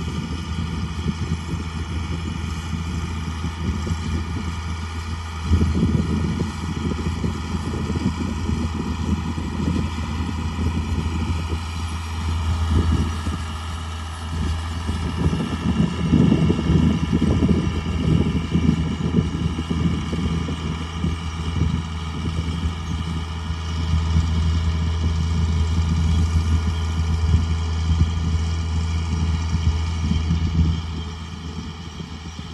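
John Deere 4955 tractor's six-cylinder diesel working under load while pulling a seed drill: a steady low drone with a thin whine above it. It swells several times and is loudest near the end as the tractor comes close.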